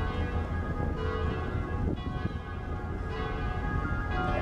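Church bells ringing, with a new stroke about once a second, over a steady low rumble.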